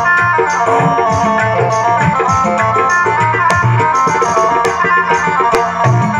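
Instrumental passage of a Rajasthani devotional bhajan: a harmonium plays the melody over a steady hand-drum beat, with no singing.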